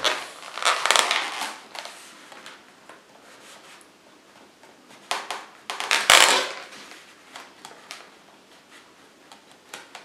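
Twisted latex modelling balloons handled and rubbed, giving two stretches of rubbing, crackling noise, about half a second in and again around five to six seconds, with faint scattered taps between.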